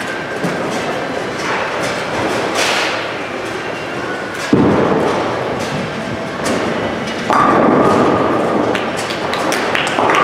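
Bowling ball hitting the lane with a heavy thud about halfway through, rolling, then crashing into the pins about three seconds later, over the steady clatter of a busy bowling alley.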